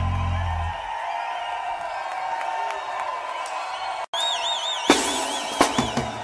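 A live reggae band's last low note dies away under a crowd cheering and whooping. After a sudden cut, a high wavering whistle and a few sharp drum hits are heard between songs.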